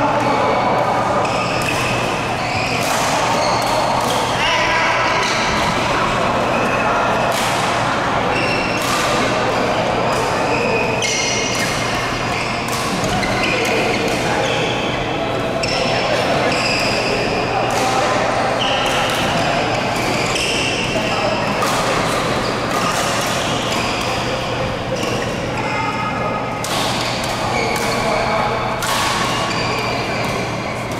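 Badminton doubles rally in a large echoing indoor hall: rackets strike the shuttlecock again and again, with short high squeaks of court shoes, background voices from players around the hall, and a steady low hum.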